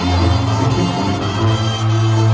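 A Sinaloan banda (brass band) playing live, heard through the arena's PA, with long held low bass notes under the melody.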